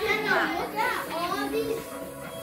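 Children's voices chattering, high and rising and falling, with no clear words.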